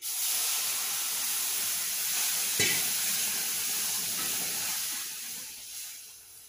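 Sheera (semolina pudding) sizzling loudly in a pan on a gas stove while being stirred. The hiss starts suddenly and fades away near the end. A spoon knocks once on the pan about two and a half seconds in.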